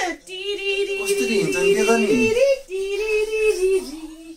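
A voice singing long held notes: one held for about two seconds, a brief break, then another held note that stops just after the end, with a second, lower voice wavering underneath during the first note.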